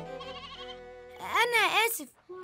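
Soft background music fades, then about a second and a half in a loud animal bleat wavers up and down in pitch three times, like a sheep or goat.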